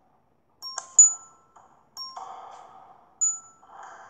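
Chime-like sound effects from a children's storybook app: a bright ping about a second in and another just after three seconds. Between them is short, thin rustly noise with little bass.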